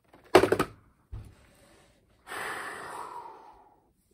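A man gasping in excitement: a sharp intake of breath, a low thump about a second in, then a long breathy exhale of about a second and a half that fades out.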